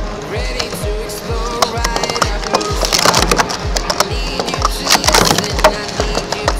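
Music with a steady thumping beat over a rapid clatter of hard plastic sport-stacking cups being stacked and knocked down on the mat. The clatter is busiest in the second half.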